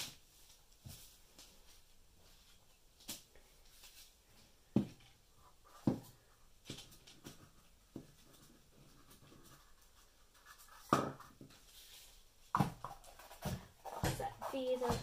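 Scattered light knocks, clicks and rustles from hands handling ceramic tiles, a baby wipe and small paper cups on a covered work table. The sharpest knocks come about five and eleven seconds in.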